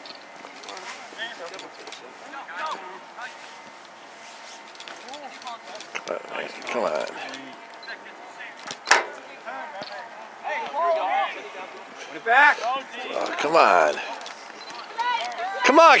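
Shouts and calls from players and sideline spectators at an outdoor soccer match, coming and going through the second half and louder near the end, with one sharp knock about nine seconds in.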